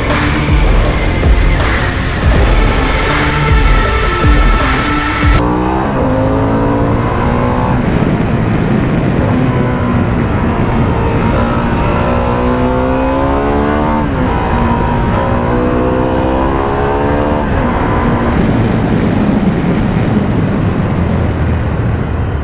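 Background music with a beat for about five seconds, cutting off suddenly. Then the Harley-Davidson Pan America 1250's V-twin engine accelerating hard, its pitch climbing through each gear and dropping back at each upshift, several times over.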